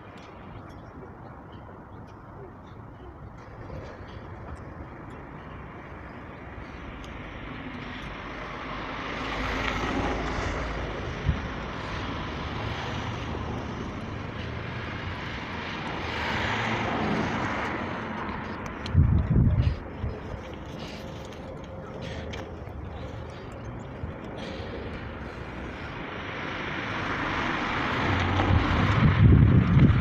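Outdoor urban noise of vehicles passing in slow swells. Wind buffets the microphone in heavy gusts about two-thirds of the way through and again near the end.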